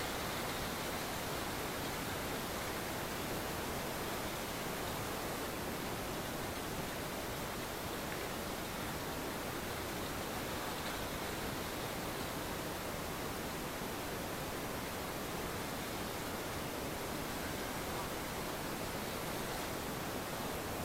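Steady, even hiss of background noise with no distinct sounds standing out.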